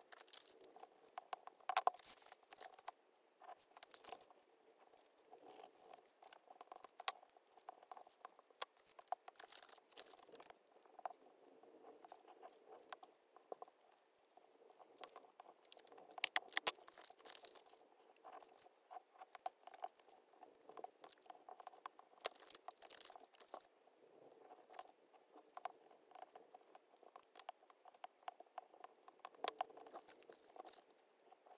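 Faint, irregular paper-handling noise: glued paper pieces being pressed, folded and smoothed down with a bone folder, giving light scratching, rustling and small taps.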